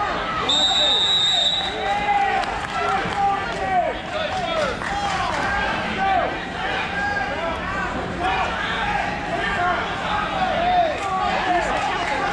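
A steady, high electronic timer buzzer sounds for about a second just after the start, marking the end of a wrestling match. Many spectators' voices shout and cheer throughout, echoing in a large hall, with scattered thuds from the mats.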